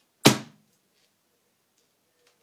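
A hand slapping down hard on a hollow shell of aluminium foil and crushing it flat against a cloth-covered table: one loud thump about a quarter second in, followed by a few faint foil crinkles.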